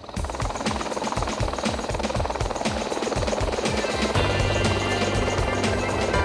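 Background music laid over a helicopter's rotor and engine sound, with a fast, even rotor chop. About four seconds in the sound changes: a steady low hum and high steady tones come in.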